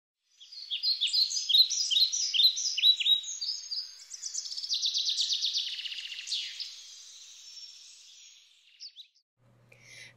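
Birdsong: a run of quick, high chirps that slide downward, then a fast trill about four seconds in, fading out near the end.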